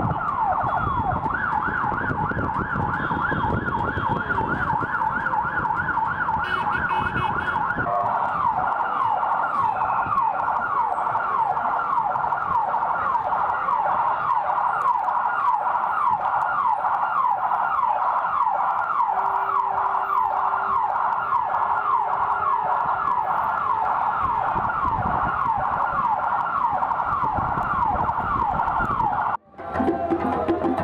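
A vehicle siren on a fast yelp, its pitch sweeping up and down several times a second, heard from inside a moving car with engine and road rumble under it for the first eight seconds or so. It stops abruptly just before the end.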